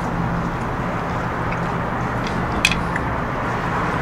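Steady outdoor street background: a noise of traffic with a constant low hum, and a single light click about two and a half seconds in.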